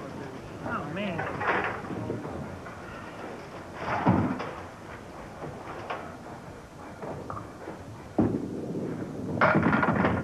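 Candlepin bowling alley with crowd chatter. There is a loud clatter about four seconds in and a sudden thud a little after eight seconds. Near the end comes a crash of candlepins being knocked down.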